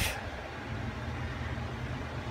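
Steady low background hum with a faint even hiss, and no clicks or knocks.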